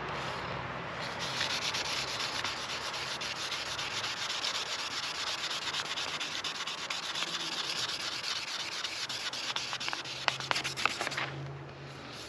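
A cloth pad rubbed briskly back and forth by hand over a boat's fiberglass gel coat, making a steady scratchy rubbing noise with a few sharper scuffs near the end before it stops.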